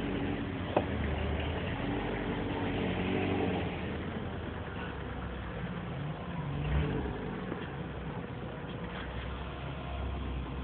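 A 4x4's engine running as it drives over snow, heard from inside the cab. There is a sharp click just under a second in.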